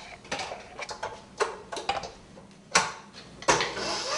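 A handful of separate sharp metal clicks and knocks from the stainless bowl of a KitchenAid Professional 600 stand mixer being handled and fitted into place on the mixer.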